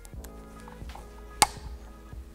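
Background music, with one sharp metallic click and a short ring about one and a half seconds in as the pilot drill is worked loose from the hot-tap machine's hole saw.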